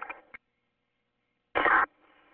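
Police two-way radio traffic: the end of one transmission trails off and cuts with a click, then dead air, then a short loud burst of radio transmission about a second and a half in.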